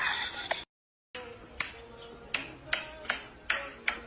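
A run of six sharp snaps, starting about a second and a half in and coming roughly every half second, over faint music.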